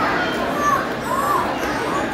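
A large crowd of people talking at once, a dense steady babble, with a few short high calls from children or other voices rising over it.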